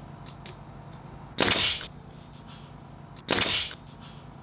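Pneumatic framing nailer firing twice, about two seconds apart, driving nails through a wooden top plate into the wall studs: each shot is a sharp bang with a short burst of air.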